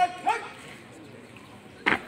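A drill commander's drawn-out shouted word of command ends with a short, bark-like shouted syllable, and near the end comes one sharp crash of a squad's boots stamping down together in unison.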